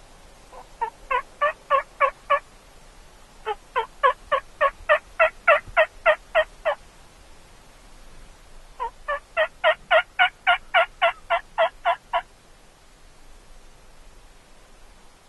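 Turkey yelps in three runs of evenly spaced notes, about three a second: a short run near the start, then two longer runs of about a dozen yelps each.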